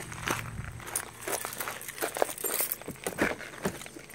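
Footsteps on gravel: a string of irregular crunching steps.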